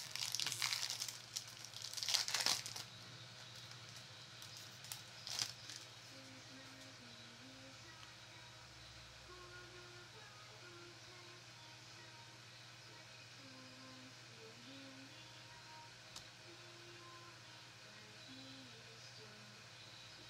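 Foil trading-card booster pack being torn open and crinkled by hand for about three seconds, with one more brief rustle about five seconds in. After that only faint room tone with a low hum.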